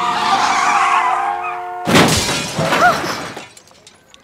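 Car tyres skidding under a steady blaring horn, then a sudden crash with shattering glass a little under two seconds in, fading out over about a second and a half.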